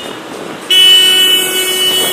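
Street traffic noise, then a loud, steady vehicle horn blast that starts under a second in and is held on without a break.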